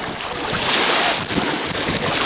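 Shallow seawater washing and splashing at the shoreline, with wind on the microphone; the water's hiss swells about half a second in and eases after about a second.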